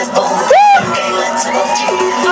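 Live pop music with a vocal, from the stage sound system; about half a second in, a loud voice swoops up and back down over the music.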